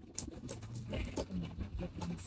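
A cardboard parcel box being handled and pulled open by hand, with scattered clicks and scrapes of cardboard and packing tape. A low, brief tone is also heard in the second half.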